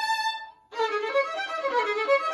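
Unaccompanied violin played with the bow: a held note dies away into a brief break, then a new phrase of moving notes begins about three-quarters of a second in.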